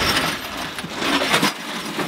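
Shards of broken glass rattling and clinking inside a smashed microwave oven as it is tipped over and shaken out onto concrete. The clatter is loudest about one and a half seconds in.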